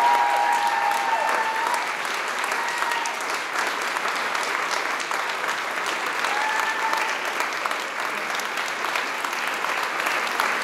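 A large crowd applauding steadily, with a few voices calling out over the clapping in the first two seconds and again at about six and a half seconds.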